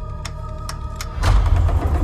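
Horror-trailer score: a held, eerie chord of steady high tones with a few sharp clicks, then a deep low rumble swelling in a little past halfway.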